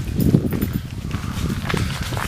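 Footsteps on a leaf-strewn woodland path, with a low, uneven rumble on the microphone.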